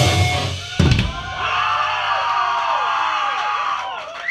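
A live metal band ends its song: the last chord and cymbals ring out and a final drum hit comes about a second in. Then the audience cheers and shouts.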